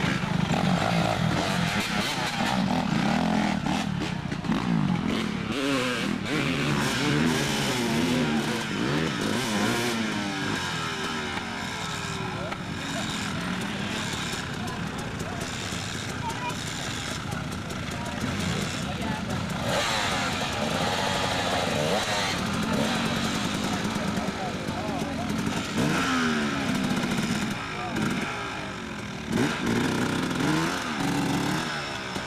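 Dirt bike engines revving up and down again and again as riders work their bikes over a tyre obstacle, with spectators' voices mixed in.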